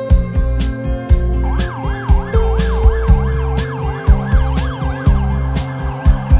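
Background music with a steady beat, joined about a second and a half in by an ambulance siren warbling rapidly up and down, two to three sweeps a second, which stops about five seconds in.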